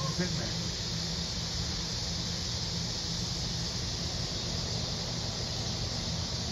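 Steady mechanical hum with a constant hiss over it. A short rising squeak comes right at the start.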